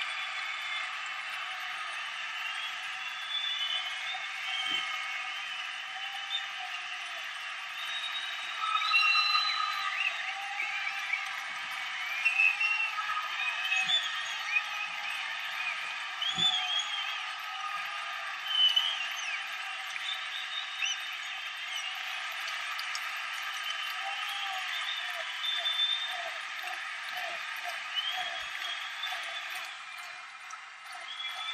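Several people's voices, distant and indistinct, talking and calling out, with a few louder calls along the way.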